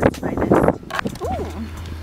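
People's voices: brief talking, then a drawn-out vocal sound whose pitch rises and falls, over a low steady hum.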